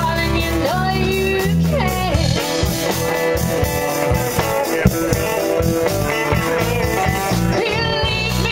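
A live blues band playing, with electric guitar, keyboard, bass notes and drums, and a woman singing at times.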